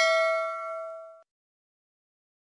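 Bell-chime notification sound effect ringing out, its several steady tones fading away and stopping a little over a second in.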